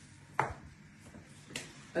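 Two short, sharp knocks: a louder one about half a second in and a fainter one about a second and a half in, over quiet room tone.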